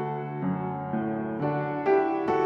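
Background music: a piano playing single notes, a new note about every half second.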